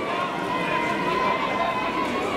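Several people talking at once, a steady mix of overlapping spectator voices with no single clear speaker.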